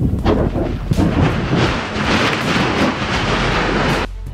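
Volcanic eruption: a loud, continuous rumble full of crackling blasts, thickening into a dense roar about a second in.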